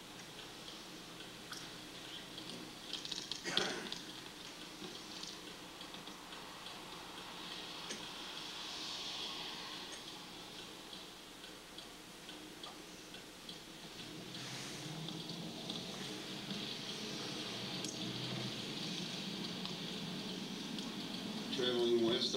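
Faint steady car road and engine noise from a videotape of a drive, played back through courtroom speakers. The low rumble grows somewhat louder about two-thirds of the way through, and there is a single click a few seconds in.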